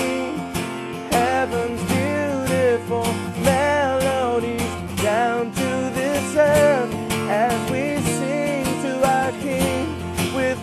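Country-style music with strummed acoustic guitar, and a wavering melody line over it.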